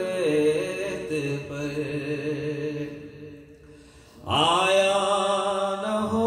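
A man's voice chanting an unaccompanied Urdu devotional kalam into a microphone, drawing out long held notes that step up and down in pitch. About three seconds in the voice fades away. Just after four seconds a strong new note begins.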